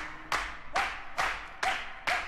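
Rhythmic handclaps, a little over two a second and evenly spaced, each with a short ringing tone, standing almost alone as the music thins out to a sparse break.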